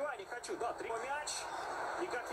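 Quiet television match commentary, a man's voice talking over a steady stadium crowd din.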